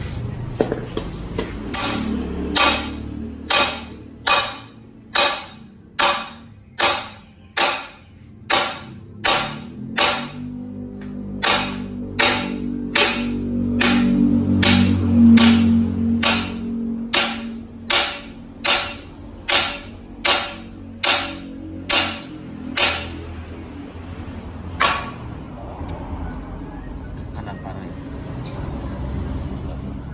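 A hammer striking the steel trailing arm of a Peugeot 206 rear torsion-beam axle again and again, about one and a half blows a second, to drive the arm off its pivot shaft. The blows stop a few seconds before the end.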